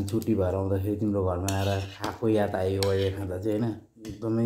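A man's voice with a metal spoon clinking against a bowl now and then.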